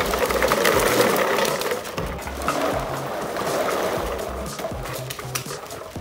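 Empty plastic water bottles clattering in a dense rattle as a garbage bag full of them is dumped out onto concrete, loudest at first and thinning out. Background music with a steady beat plays underneath.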